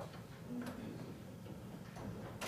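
A couple of faint clicks or taps over quiet room tone.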